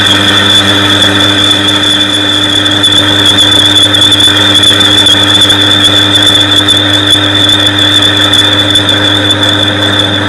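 Lathe skimming a cast-iron brake disc: the cutting tool on the disc face gives a loud, steady high-pitched squeal over the lathe's continuous motor hum.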